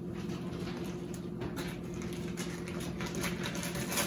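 Soft, scattered taps and rustles of hands and a small knife working garlic and herbs on a wooden cutting board, over a steady low hum.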